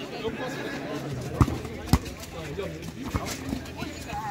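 A football being kicked on an artificial-turf pitch: three sharp knocks, about a second and a half in, half a second later, and a little after three seconds, over voices calling in the background.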